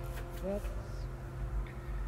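A woman says a single short word about half a second in, over a faint steady hum.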